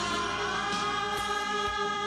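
A group of women singing a drawn-out "ah... ah..." in chorus, holding long notes.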